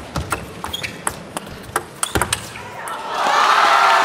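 Table tennis rally: the ball clicking sharply off rackets and table in quick succession. About three seconds in, as the point ends, loud crowd applause rises.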